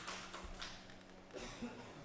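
Faint background noise with a low steady hum and a couple of soft taps in the second half.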